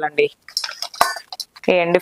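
Steel plate and dried fish pieces clinking against a steel pot as the pieces are dropped into water to soak: a soft rustle, then a sharp click about a second in and a few lighter clicks.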